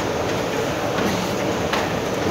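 Steady mechanical running noise of a moving escalator, mixed with the hum of a large indoor hall.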